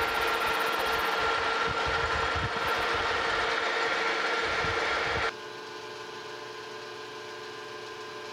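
Metal lathe running while a boring bar makes a light clean-up pass through a brass bore: a steady machine whir with a couple of steady whining tones. About five seconds in it drops off abruptly to a quieter steady hum.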